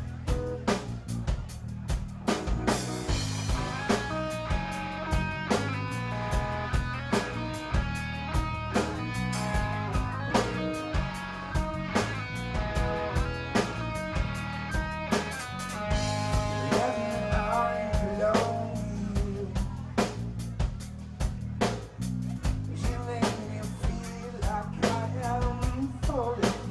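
A rock band playing an instrumental passage of a cover song: a steady drum-kit beat runs throughout over bass and guitar. A melody sits on top from about two seconds in until about eighteen seconds in.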